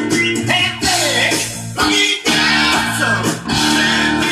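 Guitar-led music playing from a vinyl record on a Dual 1241 belt-drive turntable, with some gliding guitar notes in the first half.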